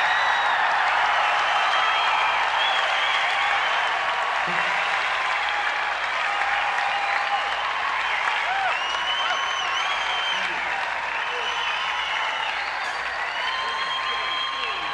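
Concert audience applauding and cheering after a song ends, with whistles and shouts over the clapping, heard on an old cassette recording of the show.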